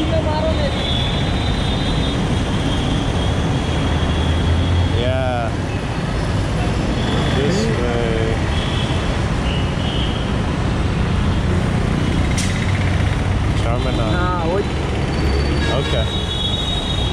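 A motorcycle idling at a standstill, with the steady rumble of street traffic around it. Short snatches of voices come through a few times.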